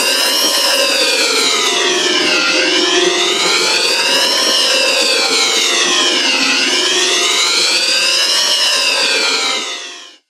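Effects-processed logo-animation sound whose pitch slides slowly up and down like a wailing siren, cresting about every four seconds over steadier lower tones. It fades out just before the end.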